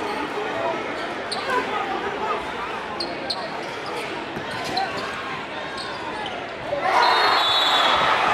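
Crowd chatter echoing in a packed basketball gym, with a ball dribbled on the hardwood and short sneaker squeaks. About seven seconds in the crowd suddenly gets louder and breaks into cheering.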